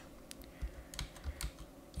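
Typing on a computer keyboard: a run of faint, irregular keystroke clicks.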